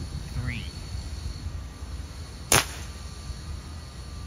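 A scoped air rifle fired once, a single short sharp crack a little past halfway, over a steady low background rumble.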